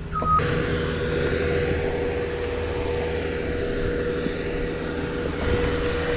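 A work truck's engine running steadily, with one steady whining tone held over the drone. A brief higher tone sounds right at the start.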